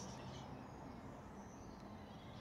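Faint outdoor ambience: a few short, high bird chirps over a low, steady background noise.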